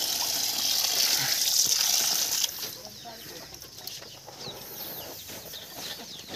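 Water pouring steadily from a pipe into a basin of fish, cutting off suddenly about two and a half seconds in. After that, faint bird calls.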